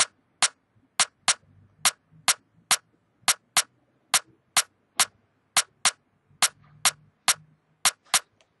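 Programmed percussion loop played back in FL Studio: a sharp, high click sample struck in a syncopated five-hit pattern that repeats about every 2.3 seconds, at around 105 BPM. It is the core rhythm pattern on which the beat is built.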